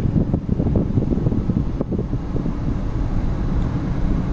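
Car driving along, heard from inside the cabin: steady road and engine noise with wind buffeting the microphone.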